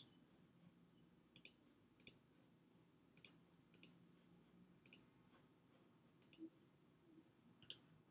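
Faint, sharp computer mouse-button clicks, about eight spread unevenly over several seconds, as accordion tabs are clicked open and shut.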